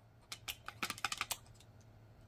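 A quick run of light clicks, about ten in a second.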